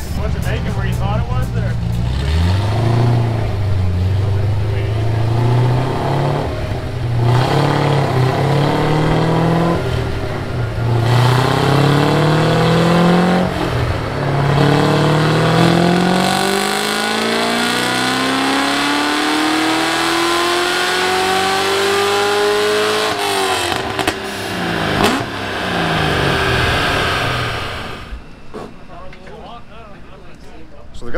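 Fuel-injected Datsun 240Z engine making a full-throttle pull on a chassis dynamometer. It revs up through three short gears, dropping at each shift, then climbs steadily in one gear for about nine seconds before the throttle is shut and the revs fall away. A single sharp crack comes a couple of seconds after the lift-off.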